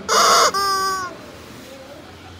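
A chicken gives one loud two-part squawk: a harsh, raspy burst for about half a second, then a clearer drawn-out note that sags slightly in pitch and ends about a second in.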